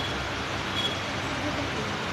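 Steady background noise with no distinct event, with a faint high tone briefly near the middle.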